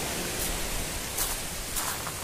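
Steady wash of noise from surf and wind on an open pebble beach, with a couple of faint crunches of footsteps on the pebbles about a second in and near the end.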